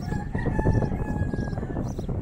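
A rooster crowing once, one long call of about a second and a half, over a continuous low crackling rumble on the microphone.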